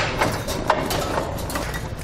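Steel trailer hitch being handled into place against the vehicle's frame and heat shield, with fish wires through its holes: a few light metallic knocks and clicks in the first second, then quieter rubbing and handling noise.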